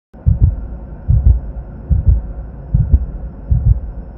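Heartbeat sound effect: a low double thump, lub-dub, repeating evenly about every 0.8 seconds, five beats in all.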